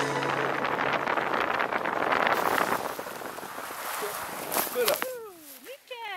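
Air rushing over the microphone during a tandem parachute canopy's final descent, fading out about three seconds in. Near the end, voices calling out with falling pitch.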